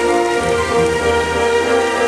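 Music with long held notes from the fountain show's sound system, over the steady hiss of fountain jets spraying and falling into the pool.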